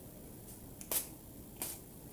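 Two short, sharp clicks about two-thirds of a second apart, mostly high in pitch, from a small perfume bottle being handled.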